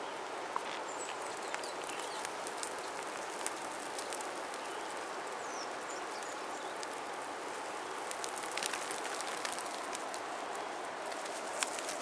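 Steady outdoor hiss with scattered light crackles and ticks of dry grass and soil being disturbed, thicker about eight seconds in and again near the end; a few faint high chirps in the first few seconds.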